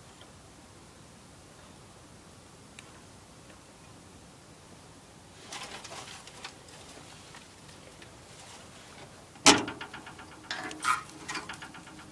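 Clicks and knocks at a small marine wood stove while its kindling is being lit: a brief spell of crackling clicks about halfway through, then one sharp loud metallic knock with a quick rattle, followed by a few more clicks.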